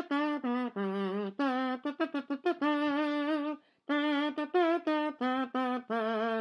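A voice humming a wordless tune in held notes, pausing briefly about three and a half seconds in.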